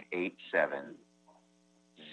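A man speaking for about the first second, then a steady electrical hum on the audio line, with several evenly spaced tones, through the pause.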